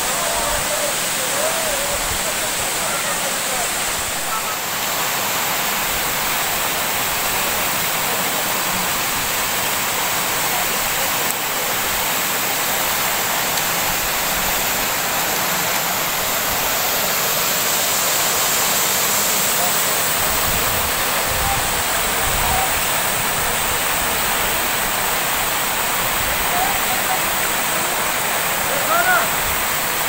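Waterfall pouring down rock slabs into a pool: a steady, loud rush of falling water that does not let up.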